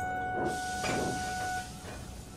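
A steam locomotive letting off steam, a steady hiss that starts about half a second in, over held notes of background music that fade out near the end.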